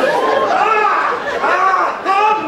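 Speech only: several voices talking over one another, with no words clear enough to transcribe.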